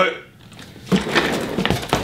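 Sneakers scuffling and shuffling on a hardwood floor, starting about a second in, with a few light knocks.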